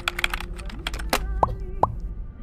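Keyboard-typing sound effect for on-screen title text: a quick run of clicks, then a single louder click and two short rising pops.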